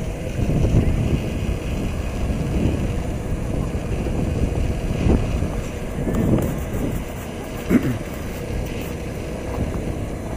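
Wind buffeting the microphone as a steady low rumble, with faint voices of people close by and a brief louder sound near the end.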